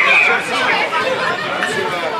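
Crowd of spectators chattering and calling out, many voices overlapping, with one high call right at the start.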